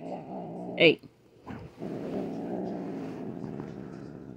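Domestic cat growling: a long low growl, a short break, then a second longer growl that slowly fades. The cat is angry at being handled.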